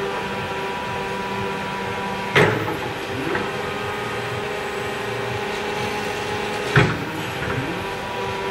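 Electric forklift's hydraulic pump motor humming steadily while the mast is worked in place, its pitch shifting as functions change. Two sharp clunks come from the mast, about two and a half seconds in and near the end.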